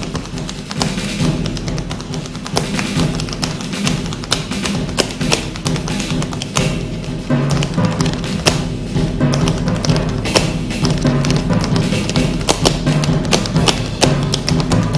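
Tap shoes striking a stage floor in fast, irregular clicks that grow denser about halfway through, over music with a steady bass line.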